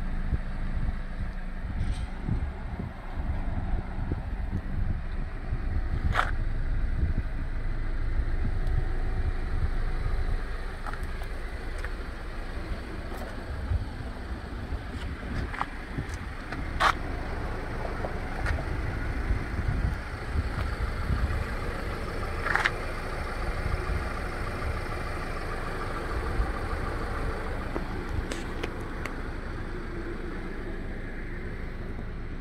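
Outdoor background noise: wind rumbling on the microphone over road-traffic noise, with a few short clicks.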